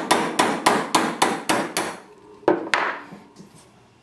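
Hammer tapping a steel pin punch to drive out the roll pin that holds the breech bolt of a first-generation Hi-Point 995 carbine. About eight quick, even strikes come in the first two seconds, about four a second, then one or two more strikes a little later.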